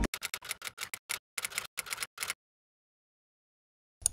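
A rapid, uneven run of short sharp clicks for about two seconds, then dead silence.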